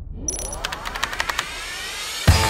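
An edited transition sound effect: a bright ding, then several tones sweeping upward over a string of quick clicks.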